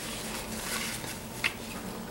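Soft rustling of a paper napkin being picked up and brought to the mouth while eating, with one short click about one and a half seconds in.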